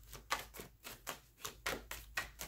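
Deck of tarot cards being shuffled by hand: a run of light, irregular clicks as the cards slap together, a few a second.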